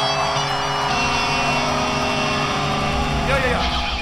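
A live rock band playing, with sustained electric guitar tones over a steady low end and a sliding pitch near the end.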